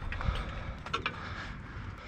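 A couple of light handling knocks and clicks from hands working on a metal trailer tongue and its wiring, a dull thump about a quarter second in and a sharper click about a second in, over a steady low outdoor rumble.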